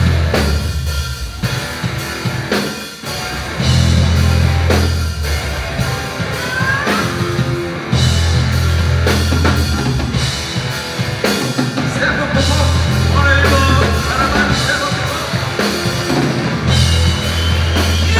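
Live rock band playing: drum kit, electric bass holding long low notes, and guitar with sliding notes.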